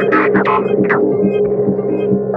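Electronic psytrance-style track at 136 beats a minute: a held synth drone over a steady pulsing beat, with a few short higher sounds in the first second.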